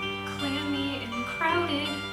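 A young singer singing into a handheld microphone over a recorded accompaniment track played through a PA speaker, with a held, wavering note about one and a half seconds in.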